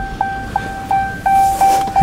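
A car's electronic warning chime repeating at one pitch, about three times a second, with a low hum from the panoramic sunroof motor as the glass slides.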